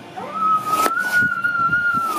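A high steady whistling tone begins about a fifth of a second in and is the loudest sound. Over it, a kitchen knife cuts through soft wood apple pulp and knocks once on the wooden cutting board, a little under a second in.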